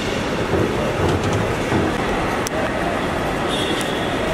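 Steady rumbling background noise of a busy airport forecourt, with a few faint clicks.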